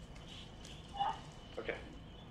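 Quiet room tone with a faint steady high-pitched hum, broken by a brief short sound about a second in and a spoken "okay" near the end.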